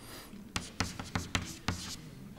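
Chalk writing on a blackboard: a quick run of about seven short taps and scrapes from about half a second in, as a short formula is chalked.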